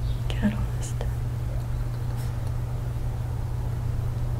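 Faint whispering over a steady low hum, with a couple of soft clicks in the first second.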